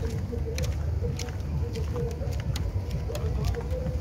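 Outdoor beach ambience: a steady low rumble with faint, indistinct voices and scattered light clicks.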